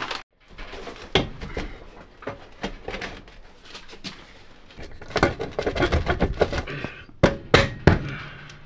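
Knocks and clunks of a bus driver's seat with a metal base being carried in and set down on the floor by the steering column, with a few sharp knocks near the end as it is shifted into place.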